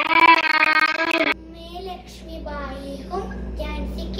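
A song with singing and a sharp beat plays loudly, then cuts off abruptly about a second in. A young girl's voice follows, speaking in a lilting, sing-song way over a steady low hum.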